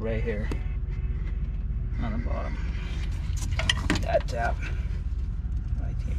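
A steady low background rumble with a few brief, faint fragments of a voice.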